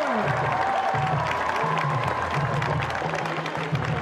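Stadium crowd cheering and clapping for a touchdown, over music with a low bass line moving in steps.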